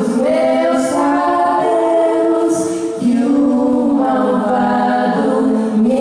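Women's voices singing together in harmony, holding long notes that shift every second or so, with no drums.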